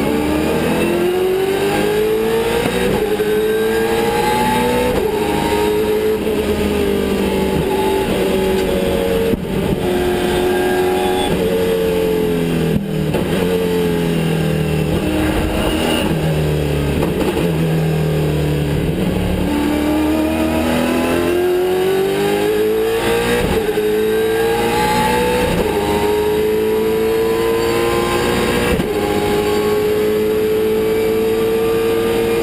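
VZ Holden V8 Supercar's V8 engine at racing speed, heard from inside the cabin: revs climb through upshifts in the first few seconds, drop in several steps on downshifts through the middle under braking, then climb again through upshifts from about twenty seconds in.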